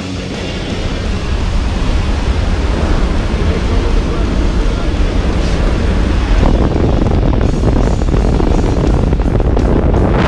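Loud wind rushing and buffeting over a helmet or handheld camera's microphone during a skydive, building over the first couple of seconds and staying strong.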